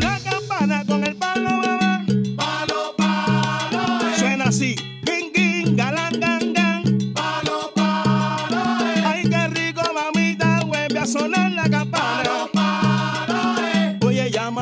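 Coda of a salsa song with the harmony instruments dropped out: only the percussion section plays a steady, repeating rhythm. A chorus sings a repeated refrain over it, and a lead singer (sonero) improvises between the chorus lines.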